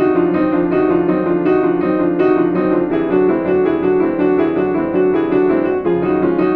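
Kawai grand piano played in a fast, even stream of notes: a finger-strengthening exercise that runs through major, minor, diminished and augmented chords, moving up a half step at a time.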